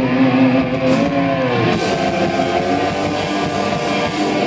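Loud distorted electric guitar through a Marshall stack, holding a long sustained note that bends downward about a second and a half in. The full rock band then carries on with guitar and drums.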